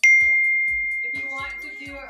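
A single bright ding: one clear, high, bell-like tone struck sharply and ringing out, fading slowly over about two seconds.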